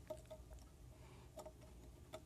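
Near silence with a few faint, light clicks of clear acrylic case pieces being handled as a small circuit board is fitted into the case.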